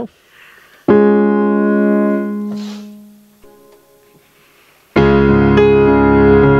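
Digital keyboard with a piano sound: a single chord struck about a second in, left to ring and fade away, then a soft chord, then steady chord playing starts about five seconds in as the song's introduction.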